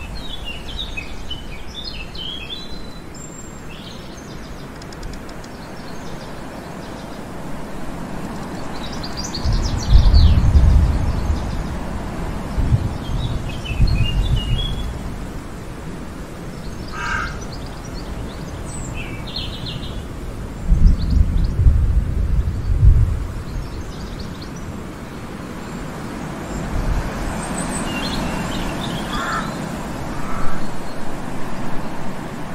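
Small birds chirping in scattered short calls over a steady outdoor hiss, with loud low rumbles about ten seconds in and again around 21 to 23 seconds.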